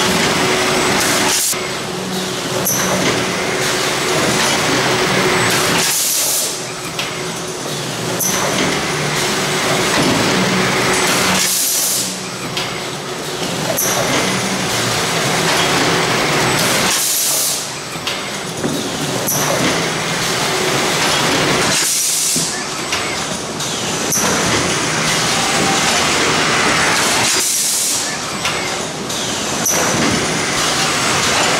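Robotic case-packing cell running: steady machinery noise with a sharp hiss of pneumatic air exhaust about every five and a half seconds, in step with the packing cycle.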